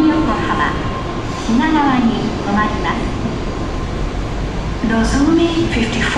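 N700S Shinkansen train rolling slowly into a station platform, a steady low rumble, under an English platform announcement over the station loudspeakers.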